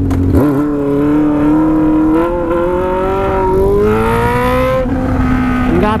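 Honda Hornet 600's inline-four engine with a stainless exhaust accelerating hard, its pitch climbing steadily for about four seconds and then dropping suddenly near the end.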